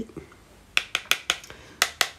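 About five sharp, light clicks in quick succession: an angled makeup brush knocking against a plastic eyeshadow palette as it picks up powder.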